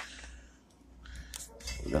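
A sharp click, then a few faint clicks and light handling noise, with a man's voice starting at the very end.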